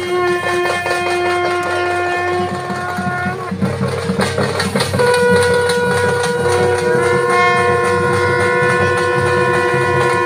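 Traditional wind instruments sounding long held notes, several seconds each, overlapping and shifting pitch about halfway through, over a low rumbling pulse.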